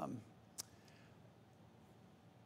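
A man's voice trailing off at the start, then a single short, sharp click about half a second in, followed by near silence with faint room tone.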